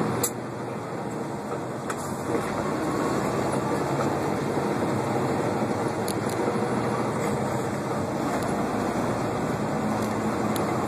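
Cab noise of a semi truck under way: a steady drone of engine and road noise heard from inside the cab, with a few light clicks.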